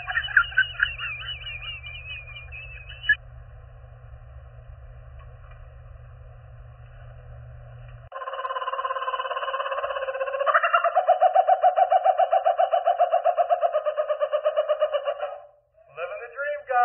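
Laughing kookaburra calling: a rolling call starts about halfway through and builds into a fast, even run of repeated laughing notes that stops shortly before the end. In the first three seconds there is a voice with a few sharp cracks.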